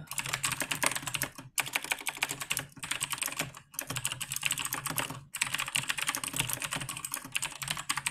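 Computer keyboard typing: fast runs of keystrokes with brief pauses about a second and a half, two and three-quarter, three and three-quarter and five and a quarter seconds in.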